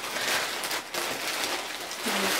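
Plastic packaging crinkling and rustling as a T-shirt is unwrapped by hand.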